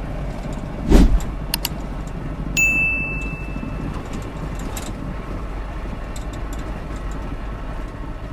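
Cabin rumble of an Isuzu Trooper driving on a rough dirt road, with a loud thump about a second in as it jolts over the ruts, followed by a couple of small rattling clicks. A short electronic tone sounds briefly between two and three seconds in.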